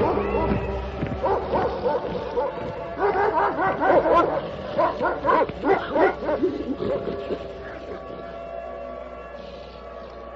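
Dogs barking and yipping in a quick run of short, pitched calls over a faint steady background tone. The calls thin out and the sound fades toward the end.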